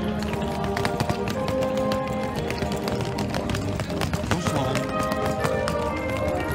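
Brass band music playing, with the hard wheels of a rolling suitcase clattering over cobblestones.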